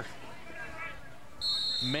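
A referee's whistle: one steady high blast starting about one and a half seconds in and lasting about a second, over faint open-field noise with distant voices. A man's commentary voice starts just before the end.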